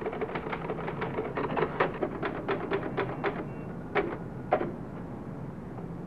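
Manual office typewriter being typed on quickly: keys clacking in irregular fast runs, then two heavier strokes about four seconds in before the typing stops.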